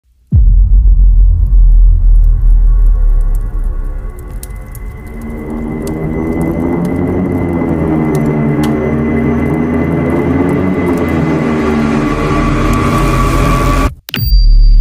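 Channel intro sting: it opens with a loud deep rumble, then a sustained musical drone swells up slowly under a steady high tone and faint scattered clicks, and it cuts off abruptly at the end.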